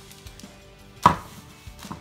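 A single sharp knock about a second in, as the cardboard box of a doll's table set is handled and a part is pulled out of it, with a brief ringing decay.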